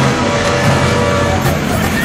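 Several motorcycle engines running together as a group of bikes rides along a road.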